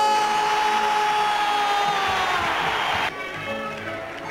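A television football commentator's long held shout greeting a penalty kick, sustained on one high pitch and sagging slightly at the end, over a swelling stadium crowd roar. The sound cuts off abruptly about three seconds in.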